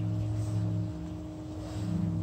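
A steady low hum of a few fixed pitches, like a running motor, over faint background noise; it eases slightly in the middle.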